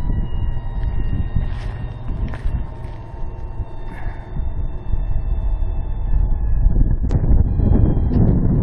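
Electric motors of a fifth-wheel trailer's automatic leveling jacks running with a steady whine that sinks slightly in pitch as the rear jacks retract, stopping about seven seconds in. Wind rumbles heavily on the microphone.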